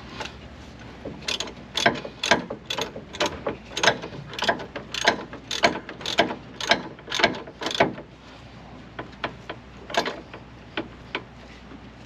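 Ratchet wrench clicking as it tightens a brake caliper bolt, in an even run of about two strokes a second for several seconds, then a few slower, fainter clicks near the end.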